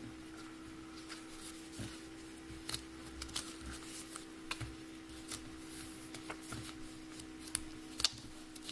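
A paper strip being folded back and forth into an accordion and creased down by fingers on a table: soft, scattered crinkles and taps. A faint steady hum runs underneath.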